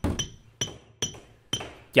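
Mallet strikes in stone carving: four sharp clinks about half a second apart, each ringing briefly.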